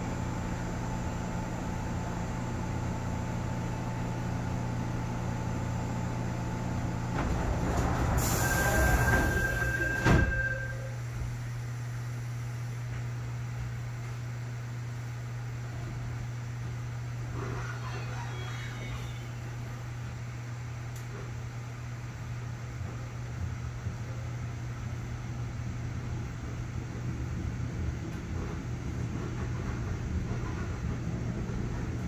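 Inside an electric Suin–Bundang Line commuter train standing at a station: a steady low electrical hum. About eight seconds in, a louder rushing swell with a short high beep as the doors close, ending in a sharp thud about ten seconds in. The hum carries on as the train pulls away from the platform.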